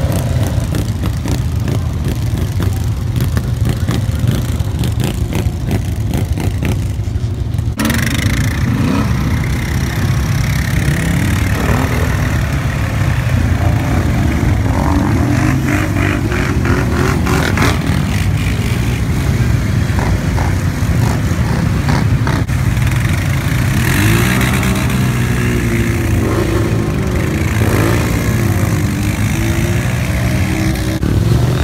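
ATV engines running and revving, with the closest quad loud and steady up close and others around it. Rising and falling revs come in the last few seconds.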